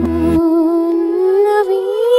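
Song played in reverse: one long held vocal note that slowly rises in pitch. The bass and beat under it stop about half a second in.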